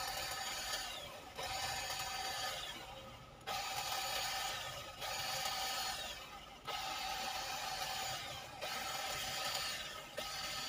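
Small handheld cordless electric hedge trimmer clipping a shrub. It runs in short bursts of about a second to a second and a half, about six in all, with the motor whine cutting in sharply and falling away at the end of each burst.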